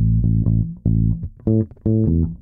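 Electric bass guitar played fingerstyle: a short bass line of about six plucked notes, the first one ringing on from before, each note starting sharply and fading.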